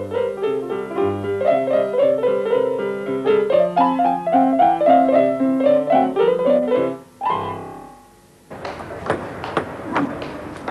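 Piano music playing a quick run of notes, ending about seven seconds in. Near the end, after a short lull, come a series of sharp taps with a roomy echo.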